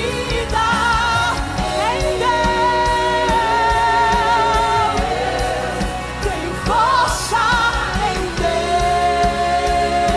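Live gospel worship music: a woman's voice holding long notes with slides between them over a band with drums and a steady low accompaniment.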